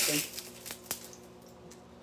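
Kitchen utensil handling at the stove and cutting board: one sharp click about a second in and a few faint ticks, over a faint steady hum.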